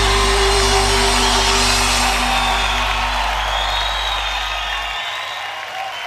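A live band's final sustained chord ringing out and slowly fading, with a crowd cheering and whooping over it. The deep bass note stops about five seconds in.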